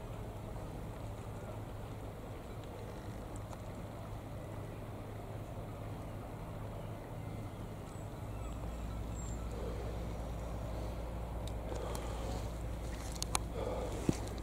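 Steady low outdoor rumble with a low hum that grows a little louder about eight seconds in, and a few sharp clicks near the end.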